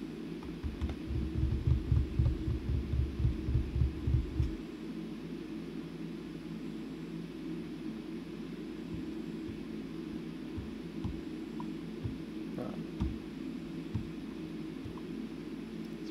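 Steady low hum with a few faint clicks; for the first four seconds or so a low throbbing rumble lies under it, then stops.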